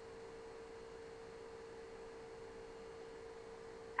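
A faint, steady electrical hum or whine held at one mid pitch, with a low hiss underneath.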